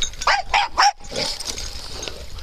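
Dog barking in play: three quick, sharp barks in the first second, then quieter.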